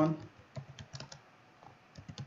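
Typing on a computer keyboard: a run of separate key clicks, growing sparser in the second half.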